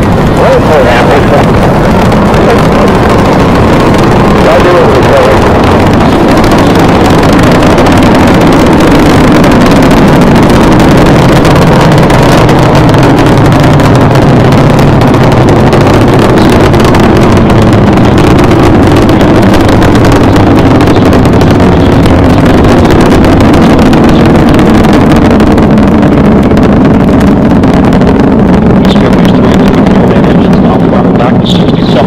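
Space Shuttle Discovery's solid rocket boosters and three main engines firing during the first seconds of ascent: a loud, continuous rocket rumble with a dense crackle. The highest tones thin out near the end as the vehicle climbs away.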